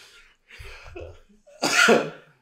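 A man's short, hoarse vocal outbursts, the loudest near the end.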